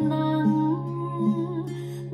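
A woman humming a sustained melody with closed lips over fingerpicked acoustic guitar, a low bass note held under plucked notes about twice a second.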